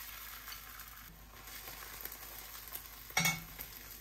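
Beaten egg sizzling in a hot cast iron skillet, with a short metallic clank of a slotted metal spatula against the pan about three seconds in.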